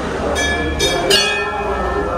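Hanging brass temple bells struck three times in quick succession, each strike ringing on with a bright metallic tone.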